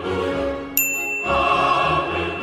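A choir holding a sustained heavenly chord, with a bright bell ding about three-quarters of a second in that rings on steadily.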